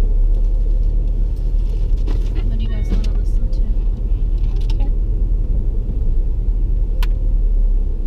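Steady low rumble of a car's engine and road noise, heard from inside the cabin as it drives. Faint voices sit in the background, and there is one sharp click about seven seconds in.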